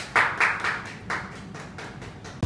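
A small group clapping their hands, loudest in the first second, then thinning out.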